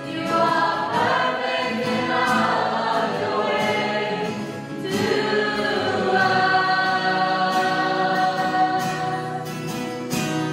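Mixed choir of young men and women singing a church song together, accompanied by acoustic guitar.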